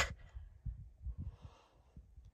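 A person's soft exhale about halfway through, over a faint, uneven low rumble.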